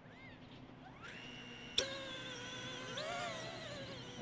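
DJI Neo mini drone's motors and propellers spinning up in the hand for a palm launch: a rising whine about a second in, a sharp click, then a steady high whine of several tones that swells briefly near the end.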